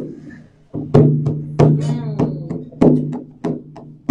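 Acoustic guitar being strummed in chords: a handful of sharp, rhythmic strums roughly a second apart, with the chord ringing on between them.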